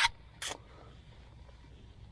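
A brief rustle of wood-chip mulch being brushed aside by hand about half a second in, then only faint low background.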